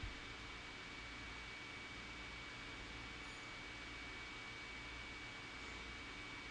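Faint, steady hiss of room tone with a thin, high-pitched whine running through it.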